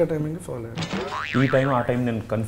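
A comic 'boing' spring sound effect, its pitch sweeping up and down, about a second in, over men talking.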